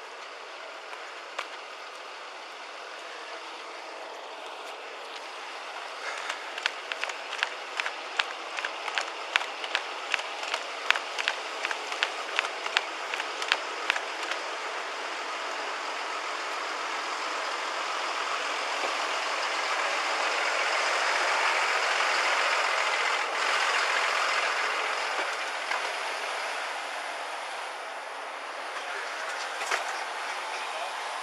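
Footsteps on pavement picked up by a body-worn camera as the wearer walks quickly: a run of quick, regular steps, then a broad rushing noise that swells and fades.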